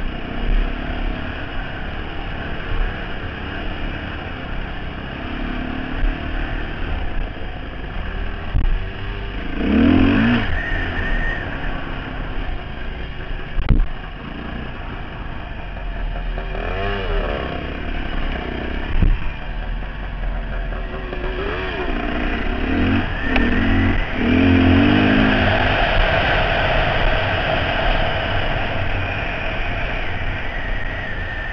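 Dirt bike engine revving up and down through the gears while riding a trail, with wind rushing over the helmet-mounted microphone; the revving is louder near the end. A sharp knock about halfway through.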